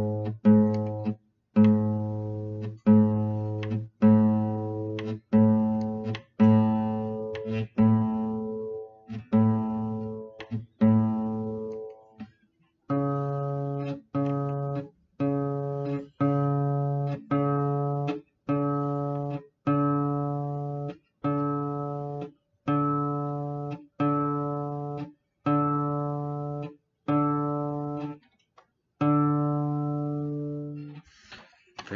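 Acoustic guitar being tuned: one open string plucked about once a second and left to ring and fade while its tuning peg is turned, first the A string, then after a short pause about 13 seconds in the higher D string, plucked the same way.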